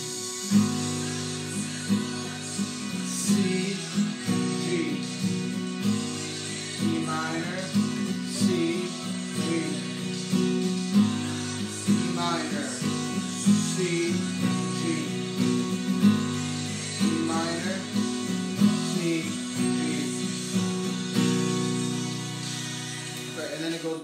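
Acoustic guitar with a capo strummed steadily through the bridge progression of E minor, C and G, with a voice singing along over it.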